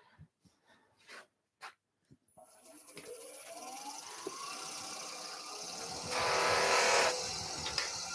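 A few faint clicks as a loose, unstitched buffing mop is fitted on a wood lathe, then the lathe motor starts with a rising whine and runs steadily, the spinning mop adding an airy rush that grows louder for about a second near the end.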